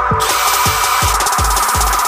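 Background electronic music with a steady kick-drum beat, over the high grinding whir of a cordless drill's cone step bit cutting into a plastic bulb dome, which stops near the end.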